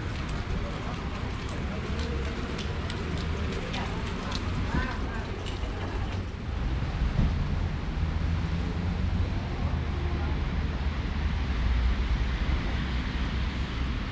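Outdoor ambience on a wet street: a steady low rumble with faint distant voices about five seconds in and a few light clicks early on.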